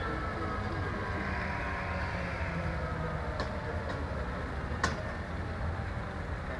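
Kamov Ka-32 coaxial-rotor helicopter shutting down: its turbine engines wind down with a thin whine over a steady low rumble as the rotors slow. A sharp click comes near the five-second mark.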